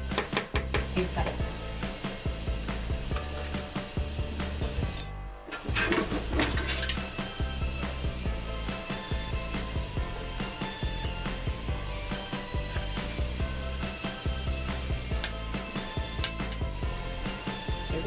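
Background music, with a spoon scraping and clicking against a plastic container as tuna salad is mixed and scooped out; the clicks come in clusters just after the start and again about six seconds in.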